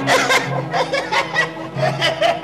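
A performer's loud stage laughter, a rapid run of short "ha" bursts at about five or six a second, over background music holding a steady low drone.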